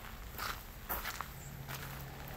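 Footsteps crunching on a gravel trail, about two steps a second.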